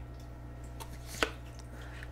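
A single short, sharp tap a little over a second in, over a steady low hum: an oracle card being laid down on the table as the next card goes into the row.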